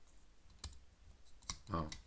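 Plastic LEGO parts clicking as the dragon's head is swivelled on its neck joint. There are two sharp clicks about a second apart, with fainter ticks between. The joint sticks a little where parts rub.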